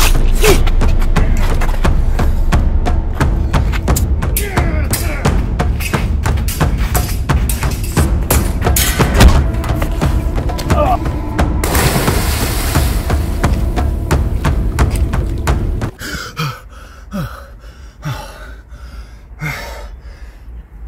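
Fast music under a staged sword fight, full of sharp hits and thuds with shouts. It cuts off suddenly about 16 seconds in, leaving a quiet room with a few short gasping breaths.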